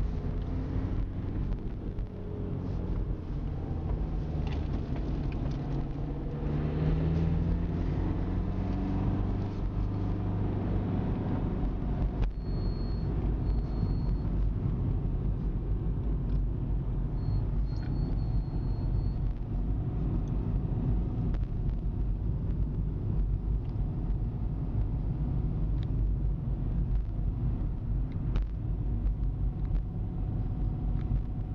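A motor vehicle's engine and road rumble running steadily, the engine note shifting in pitch a few seconds in. A few brief high-pitched squeaks come around the middle.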